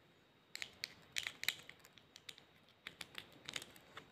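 Coloured pencil shavings being scraped across paper with a pencil and pushed into a plastic bowl: a scatter of light, irregular scratches and ticks that begin about half a second in.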